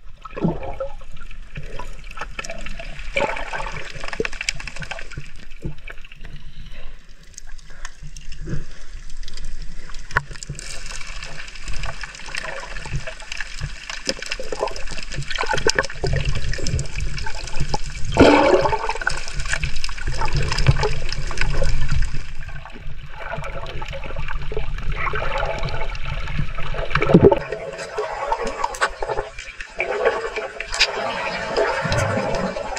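Water heard underwater: a steady churning and gurgling with scattered clicks and crackles, growing into a heavier low rush for several seconds past the middle.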